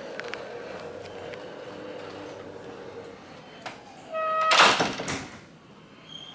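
A short electronic chime about four seconds in, immediately followed by a loud rushing noise lasting about a second, over a steady hallway background with a few light clicks.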